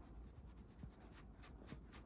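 Faint, quick scratching strokes on a scalp through hair, several in a row and more of them in the second half, as dandruff flakes are scratched loose.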